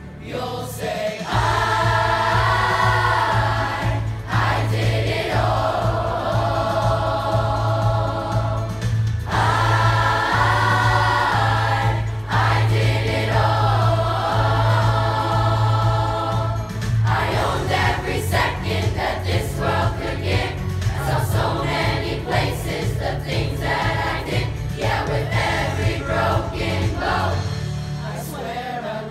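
Middle school chorus of seventh and eighth graders singing together, with a steady low accompaniment under the voices through the first half.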